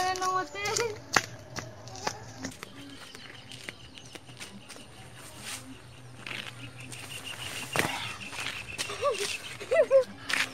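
Scattered rustles and knocks of a boy pushing through undergrowth and climbing a small tree, with one louder thump about eight seconds in. A faint steady high tone runs in the background from a few seconds in.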